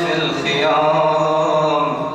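A man's voice chanting an Arabic devotional poem, drawing out one long melodic phrase with slow bends in pitch, over a steady low drone.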